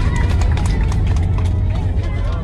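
Jet airliner's landing rollout heard from inside the cabin: a loud, steady low rumble of the engines and wheels on the runway, with the cabin rattling, just after touchdown with the wing spoilers raised. Faint voices sound underneath.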